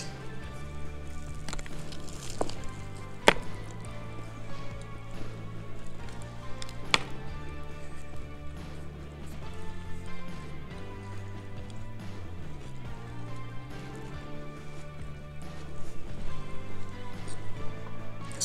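Background music of soft held low notes that change in steps, with a few sharp clicks of a bite and chewing on a burger in the first seconds and once more a little later.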